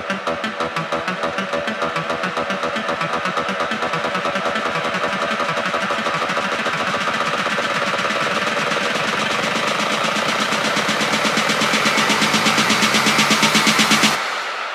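Electronic dance music build-up in a melodic techno DJ mix: a fast pulsing figure of about five pulses a second, with a hiss-like riser that grows brighter and louder throughout, cutting off suddenly at the end and leaving an echo tail.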